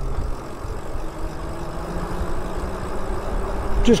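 Wind and tyre rumble from an e-bike being ridden on pavement, with a faint motor whine that rises slightly in pitch from about a second in.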